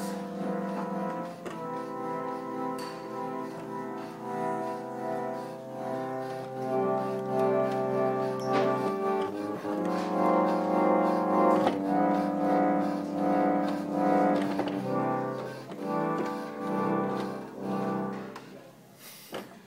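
Pump organ (reed organ) played with both hands: sustained chords held for a second or two each, moving from one chord to the next.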